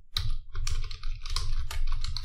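Fast typing on a computer keyboard, about a dozen keystrokes in two seconds.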